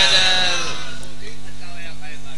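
A man's drawn-out, wavering chanted note through a public-address loudspeaker, fading away about half a second in. After it the loudspeaker's steady low hum and faint vocal traces remain.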